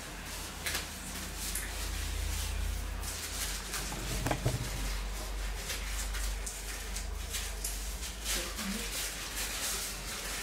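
Scissors cutting dry hair: a scattered series of short, crisp snips, over a steady low hum.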